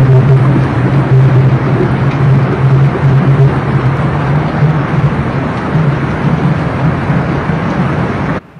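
Muddy floodwater torrent rushing past, a loud, steady rush of churning water with a strong low rumble underneath.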